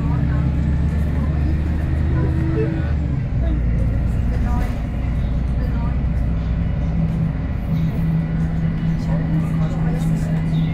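VDL SB200 single-deck bus running under way, with its diesel engine giving a steady low drone and road noise, heard from inside the passenger saloon. The engine note shifts about three seconds in, then settles into a steady hum again.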